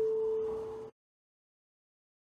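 A bell-like chime holding one steady pitch and slowly fading, cut off suddenly about a second in.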